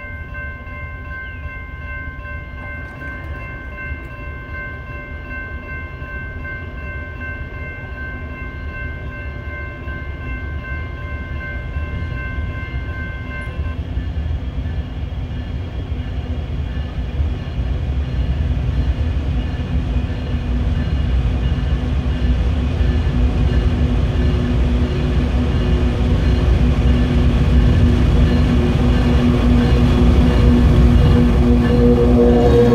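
Diesel freight train led by a Kansas City Southern locomotive approaching: a low rumble that grows steadily louder. A steady chord of high tones holds until about thirteen seconds in, then stops, and low steady tones come up near the end as the train nears.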